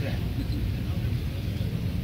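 Steady low outdoor background rumble with no clear words in it.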